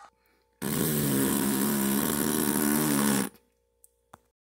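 A loud, harsh buzzing sound effect begins about half a second in, holds steady for nearly three seconds, and cuts off abruptly near the end.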